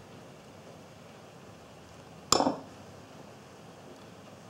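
A single sharp clink about two seconds in, as a steel knife is set down on the wooden table among the other knives; otherwise only faint room hiss.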